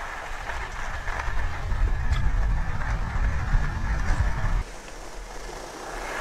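Wind rumbling on an action-camera microphone with the hiss of skis sliding on snow as a freeskier rides toward a jump. The rumble drops off suddenly about four and a half seconds in.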